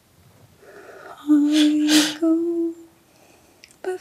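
A woman's voice singing two long wordless notes, the second a step higher, over a breathy rush of air that swells before the first note.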